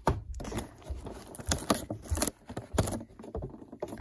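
Hands handling a cardboard toy box with a clear plastic window: a run of irregular taps, clicks and crinkles from the plastic and cardboard.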